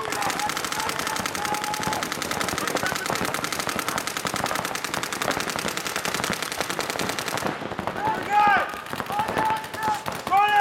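Rapid, overlapping fire from several paintball markers, many shots a second in a continuous stream, that cuts off suddenly about seven and a half seconds in. Voices shouting follow near the end.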